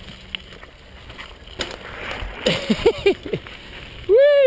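Mountain bike rolling down a rocky dirt trail: a steady rumble and rattle with a few sharp knocks from the rough ground. About two and a half seconds in, several short pitched sounds rise and fall.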